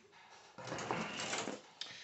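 Plastic model-kit parts being handled on a table: a rustling scrape lasting about a second, then a light click near the end.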